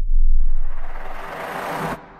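Edit sound effects: the tail of a deep bass boom dies away, then a noisy whoosh swells up into the high end for about a second and a half and cuts off suddenly near the end.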